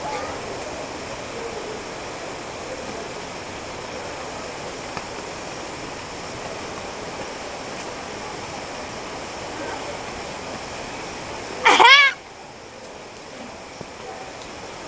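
A steady rushing noise with faint distant voices. Near the end comes one short, loud, high-pitched shout from a person.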